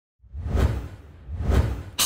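Two whoosh sound effects, each a rising and falling swell of noise over a low rumble, peaking about half a second and a second and a half in: the transition sounds of an animated intro.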